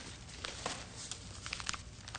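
Newspaper pages rustling and crackling as they are handled, in a few sharp crinkles over a low room hum.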